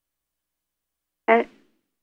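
A single short spoken word, "And," about a second in; otherwise silence.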